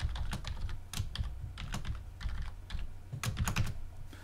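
Computer keyboard typing: irregular single keystrokes as a password is entered, with a quick run of keys near the end.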